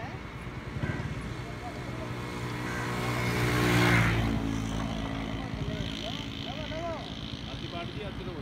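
A motor vehicle passing by, its engine noise swelling to a peak about halfway through and then fading away.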